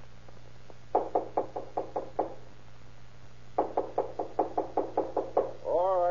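Radio-drama sound effect of knocking on a door: a quick run of about eight knocks, a pause of over a second, then a longer run of about a dozen. Just before the end a man's drawn-out, wavering voice begins.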